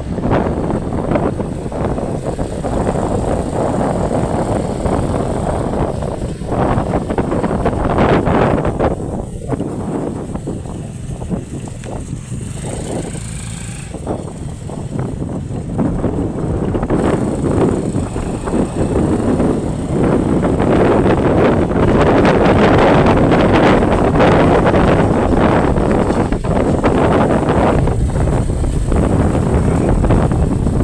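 Motorcycle engine running while riding along a paved road, with wind rushing over the microphone. It grows louder in the second half.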